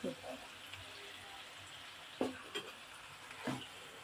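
Onion, tomato and spice masala frying in a pan: a soft, steady sizzle, with a wooden spoon stirring through it.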